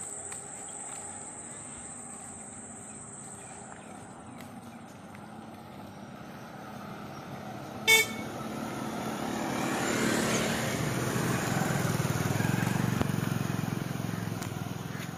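A vehicle horn gives one short toot about eight seconds in, then a motor vehicle approaches and passes, its engine and road noise swelling over the last few seconds.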